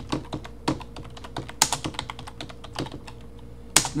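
Computer keyboard typing: a quick, uneven run of keystrokes, with one louder key strike near the end.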